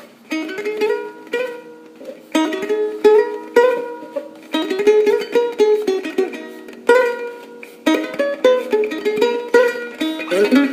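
Slow solo instrumental music played on a handmade instrument called the wooden sphere. Plucked notes and chords ring out and fade, a new cluster about every second, over a held low tone.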